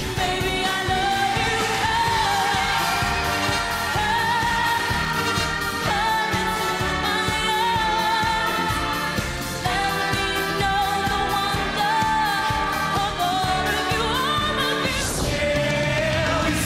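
Pop singers performing live over a backing track, heard as short song excerpts cut together, each switching abruptly to the next about six, ten and fifteen seconds in.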